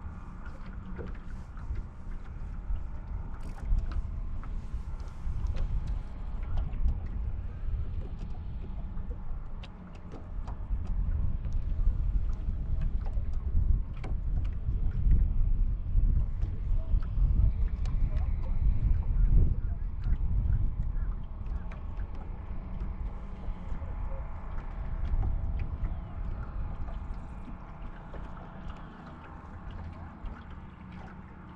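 Wind gusting on the microphone, a low rumble that swells through the middle, over small waves lapping against the boat's hull, with occasional light clicks.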